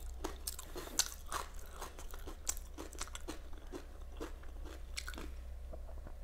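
Close-miked chewing of a mouthful of homemade egg burger with lettuce: a run of irregular short, sharp mouth clicks and crunches, the loudest about a second in.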